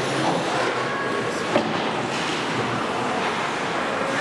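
Ice hockey play on a rink: skate blades scraping and cutting the ice in a steady wash of noise, with one sharp knock of stick, puck or boards about one and a half seconds in.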